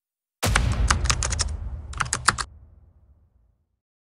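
A title-card transition sound effect: a sudden low rumble under a quick run of sharp clicks, clattering in two bursts and fading away about three seconds in.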